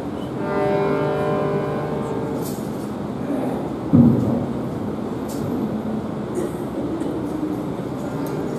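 A held pitched note with many overtones sounds for about a second and a half, then a sudden low thump comes about four seconds in, over a steady rumble of hall noise.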